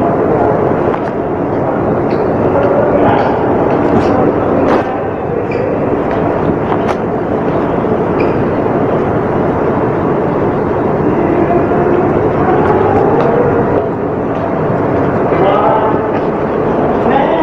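Steady, loud machinery running aboard a ship, with a person's voice over it.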